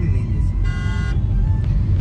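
Low rumble of a car's engine and road noise heard inside the cabin, with one short vehicle horn toot of about half a second, a little over half a second in.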